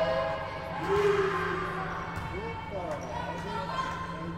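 A volleyball bouncing on a sports-hall floor a few times, amid girls' voices and calls echoing in the hall over a steady low hum.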